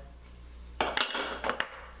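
A few light knocks and clatters of a square wooden insert being handled and dropped into its recess in a drill press table. The first knocks come about a second in, and one more half a second later.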